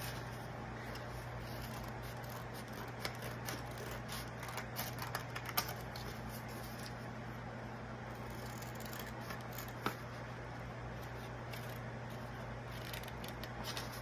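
Small scissors cutting construction paper: scattered short snips and paper rustles, over a steady low hum.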